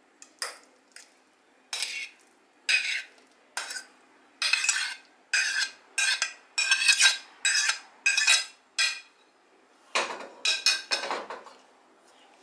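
A metal fork scraping mashed banana off a ceramic plate into a stainless-steel mixing bowl: a series of short, sharp scrapes and clinks, about a dozen. Near the end comes a denser clatter of utensils against the bowl.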